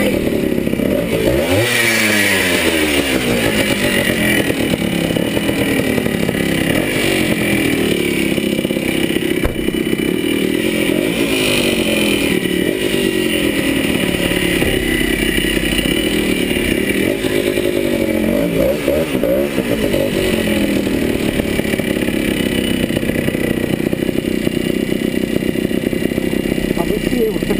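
A 1974 Yamaha DT175's single-cylinder two-stroke engine being ridden, its revs rising and falling several times, most clearly about two seconds in and again around eighteen to twenty seconds.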